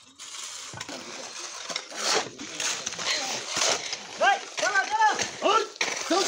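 Shovels and hoes scraping and slapping through wet concrete, with water spraying from a hose onto the slab. About four seconds in, several short high calls rise and fall over the scraping.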